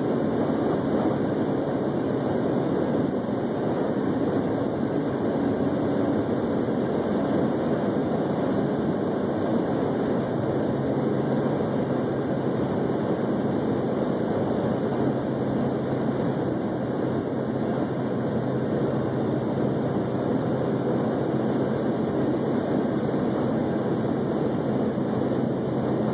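A car cruising steadily at highway speed, with an unbroken rush of tyre and road noise and a low engine hum underneath.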